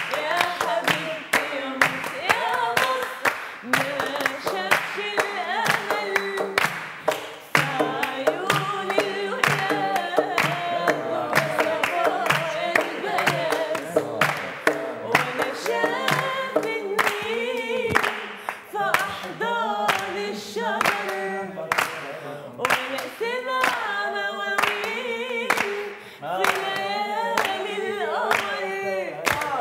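A young woman sings an Arabic song unaccompanied, with a group of people clapping along in time.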